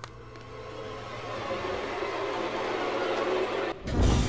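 A rushing noise that swells slowly and cuts off abruptly near the end, with a low steady hum joining about halfway through.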